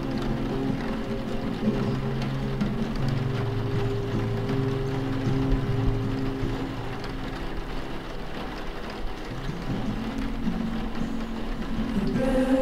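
Steady rain mixed with soft background music that holds a few sustained low notes, which thin out in the second half.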